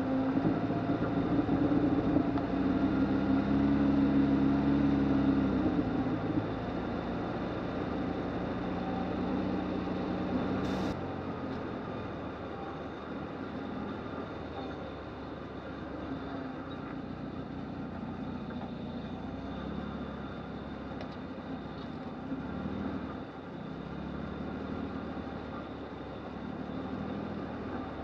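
A 1997 Lexus LX450's 4.5-litre straight-six engine runs at crawling speed on a rough trail. It is loudest and straining for the first six seconds, then settles to a steadier, quieter run. A single sharp click comes about eleven seconds in.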